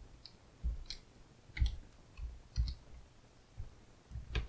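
Computer keyboard being typed on slowly: about seven separate key clicks at an uneven pace.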